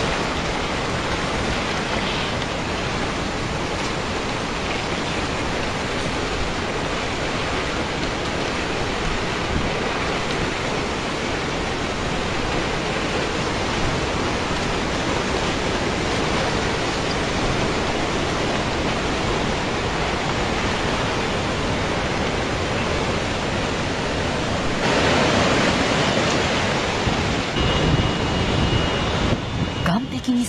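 Tsunami floodwater rushing through a town, a dense, steady roar of churning water with no distinct knocks. It grows louder near the end.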